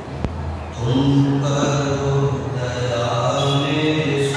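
Sikh devotional chanting in long, held notes, starting about a second in, after a single sharp click.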